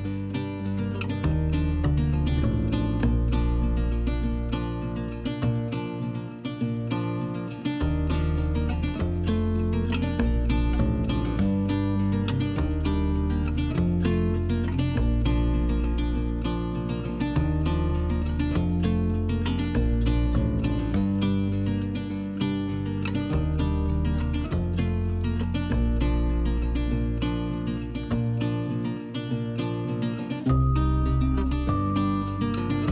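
Instrumental background music: plucked strings over a pulsing bass line with a steady beat.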